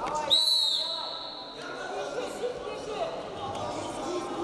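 Referee's whistle: one sharp, high-pitched blast about a third of a second in, fading over about a second, signalling the start of wrestling. Voices from the hall go on underneath.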